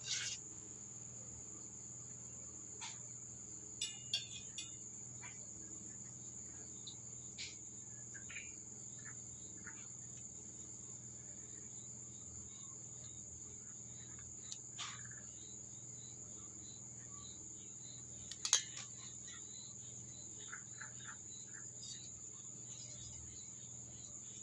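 Crickets chirring in one steady, high-pitched drone, with a few short clicks and rustles from the bonsai's branches being handled, the sharpest about two-thirds of the way through.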